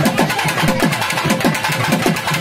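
Fast, loud drumming: low strokes about five a second, each dropping in pitch, over a dense patter of sharper beats.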